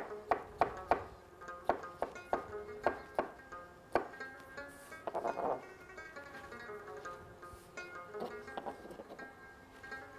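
Chef's knife chopping cucumber on a plastic cutting board: quick sharp chops about three a second for the first four seconds, then fewer, over background music of plucked strings.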